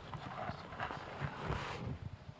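Irregular soft knocks and thuds, several a second, over faint room hiss.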